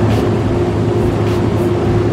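Steady low machine hum with a constant tone above it, from the fans and compressor of an open refrigerated display case. Faint scratchy rustles sound over it.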